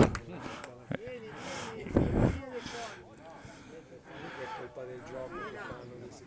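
Faint, distant voices of young players and people at the pitch side calling out during a youth football match. There is a single sharp knock about a second in and a brief low thud at about two seconds.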